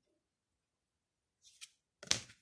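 Tarot cards being handled: a brief, faint slide and flick of cards, two quick strokes about one and a half seconds in, otherwise near silence.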